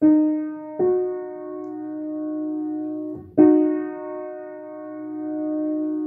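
Upright piano playing a minor third, the ninth example in an interval-recognition exercise. The lower note sounds first and the upper note about a second in, both ringing on; at about three seconds in the two notes are struck again together.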